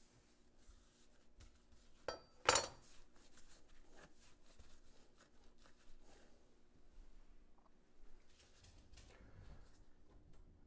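Faint knife-and-board handling sounds as cut-up steak is worked on a wooden cutting board, with a single sharp metallic clink of the knife about two and a half seconds in, the loudest sound.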